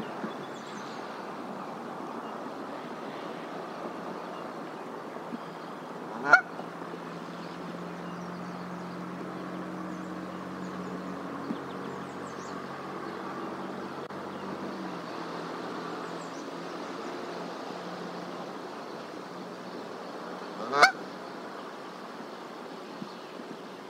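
Canada goose giving two short, loud single honks, about fourteen seconds apart.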